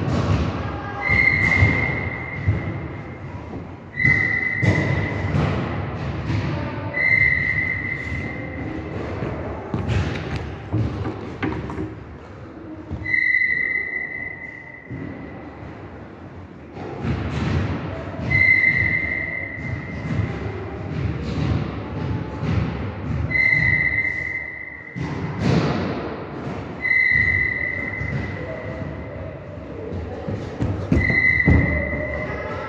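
Repeated thuds and footfalls in a large, echoing hall, typical of high-jump run-ups and landings on a mat. A steady high tone sounds seven times, every three to five seconds.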